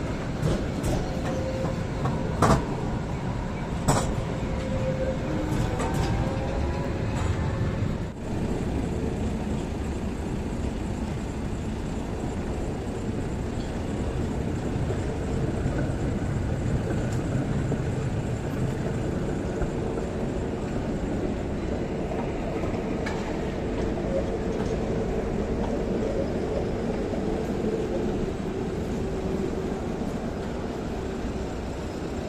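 City trams running on street track, with steady rolling noise and a faint hum. There are a few sharp wheel clacks over the rail joints in the first four seconds.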